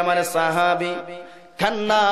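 A man's voice chanting in the drawn-out, melodic tune of a Bengali sermon, holding long notes. It breaks off about halfway through and resumes on a higher note.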